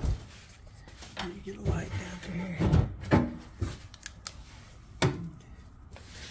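Handling noises: a few scattered knocks and clunks, with rustling as a quilted moving blanket and other things are shifted about.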